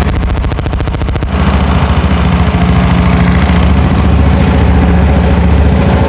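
Yamaha Mio M3 scooter's single-cylinder engine, bored up to 150cc with a Honda Sonic piston, idling steadily at about 1600 rpm and running fairly smooth. Its firing pulses sound crisper for the first second or so.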